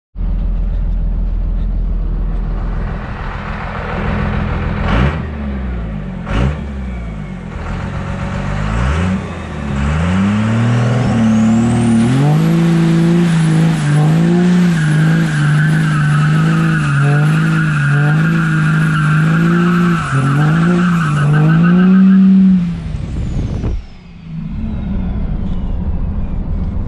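Swapped 5.9-litre 12-valve Cummins inline-six turbo diesel with a P-pump in a 1996 Ford F-350, blipped twice. It is then revved up and held at high revs for about ten seconds in a burnout, with a high turbo whistle and the rear tyres squealing. It drops back toward idle near the end.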